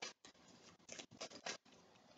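Faint short rustles and flicks of a tarot deck being handled in the hands, a small cluster of soft card sounds about a second in.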